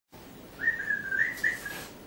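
A person whistling a few short notes: one thin, wavering, fairly high tone that steps up and down for about a second before stopping.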